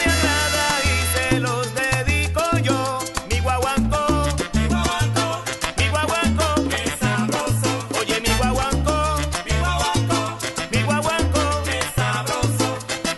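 Salsa recording playing: a bass line in short repeated notes under busy percussion and a melody line.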